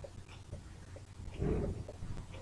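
Flat metal spatula stirring and scraping thick, reduced khoya in a kadhai: soft repeated scrapes and small squelches, with one louder short sound about one and a half seconds in.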